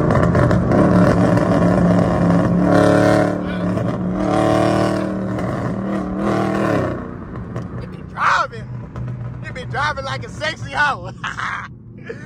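Dodge Scat Pack's 6.4-litre 392 HEMI V8 running steadily at highway cruise, heard from inside the cabin, then easing off and getting quieter about seven seconds in.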